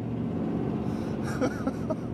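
Steady engine and road rumble of a moving car heard from inside the cabin, with a man's short laugh near the end.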